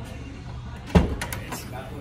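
Nissan Kicks rear hatch unlatching and swinging open: one sharp clunk about a second in, followed by a couple of lighter clicks.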